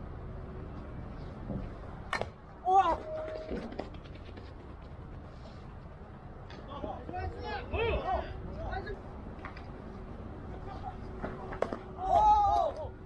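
A single sharp crack of a baseball bat hitting the ball about two seconds in, followed by players' shouts across the field.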